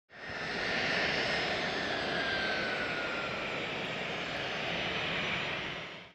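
Airplane engine noise, likely an intro sound effect, fading in quickly and holding steady with a faint falling whine in its first half, then fading out near the end.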